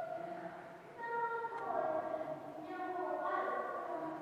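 A child's high voice in the background, drawn out in a few long held notes that shift in pitch from one to the next.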